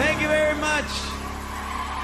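A man's voice calling out into the microphone for under a second as the song's last low note rings on, over cheering from the audience.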